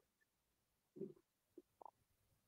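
Near silence: room tone, with a couple of faint, short low sounds about a second in and near the end.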